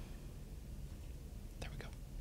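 Quiet room tone with a low hum, and two quick faint clicks near the end, the double-click of a computer mouse opening a video.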